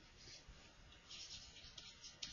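Faint scratching of a stylus on a pen tablet, in short strokes as handwriting is written, starting about a second in.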